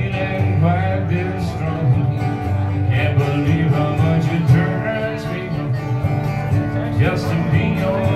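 Solo acoustic guitar strummed under a man's voice singing a slow country ballad, played live through a small PA.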